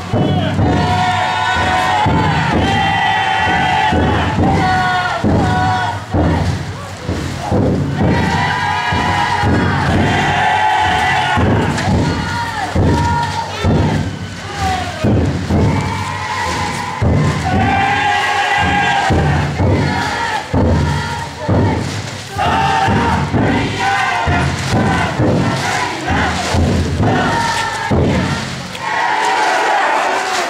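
A large crowd of futon daiko bearers shouting a chant together, in long drawn-out calls repeated every couple of seconds. Under the chant come steady thumps, likely the taiko drum inside the float.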